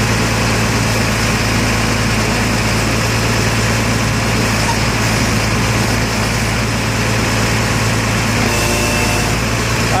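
Truck engine running steadily at idle to drive the truck-mounted hydraulic crane. A brief higher tone comes in near the end.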